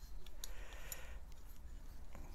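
Wooden handle being unscrewed from the threaded shaft of a jeweler's steel tube-cutting jig: a couple of faint metal clicks, then a soft scraping.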